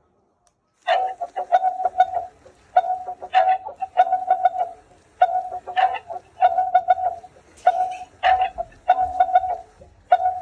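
Dancing cactus plush toy playing a repetitive electronic tune: short chirping phrases over a steady beeping tone with fast ticking clicks, starting about a second in after a brief silence.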